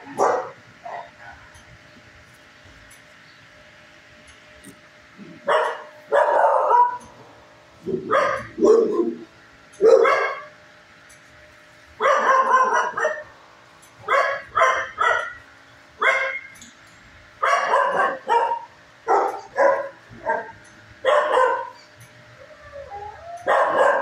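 Dog barking repeatedly, starting about five seconds in and going on in short barks, singly and in quick twos and threes.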